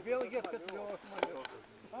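Several voices calling and shouting at once across an open football pitch, overlapping, with a few sharp clicks among them.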